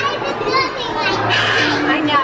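Young girls laughing and talking excitedly in high voices, with other voices in a busy dining room.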